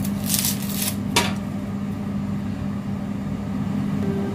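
Steady hum of a kitchen cooker-hood extractor fan. Early on there is a brief rustle, then a single sharp knock about a second in: a knife cutting through an onion onto the chopping board.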